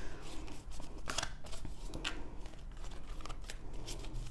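Tarot cards being shuffled and handled, with a few short crisp snaps as the cards are flicked and slid against each other.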